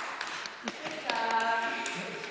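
Scattered sharp taps of children's shoes on a wooden dance floor, with a child's high voice held for nearly a second in the second half.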